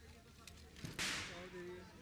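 A single sharp crack about a second in, the loudest sound here, dying away within a fraction of a second, over background voices.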